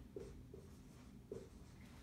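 Marker writing faintly on a whiteboard, in about three short strokes.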